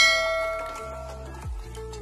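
A bright bell chime sound effect rings once and fades over about a second, over background music with a deep bass beat.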